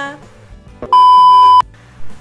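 A single loud, steady electronic beep, one flat high tone about two-thirds of a second long. It starts about a second in and cuts off sharply, like an inserted bleep tone.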